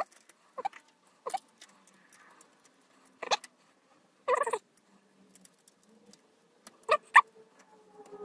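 Handling noise as a small cooling fan is fitted into a plastic print-head shroud: a scattering of short clicks and brief squeaks of plastic parts and fingers, the loudest a few seconds in and near the end.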